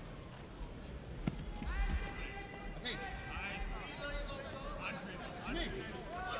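Dull thuds of bodies hitting the tatami mat a little over a second in, then overlapping shouts and calls from the arena crowd and coaches.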